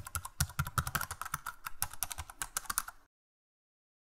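Computer-keyboard typing sound effect: a quick run of key clicks that stops about three seconds in.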